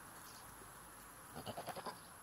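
A goat bleating once, a short quavering bleat in the second half.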